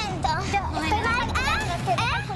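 Several voices talking over one another in a replayed reality-TV scene.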